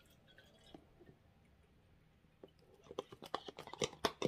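A thin disposable plastic water bottle held upside down and emptied into a sports bottle: quiet at first, then from about three seconds in a quick run of crackles and clicks as the plastic crinkles while the water glugs out.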